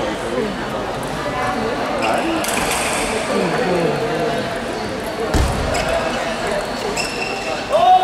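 Table tennis ball clicking off the table and bats during a rally, over the chatter of people in a large, echoing sports hall. A short, loud shout comes near the end.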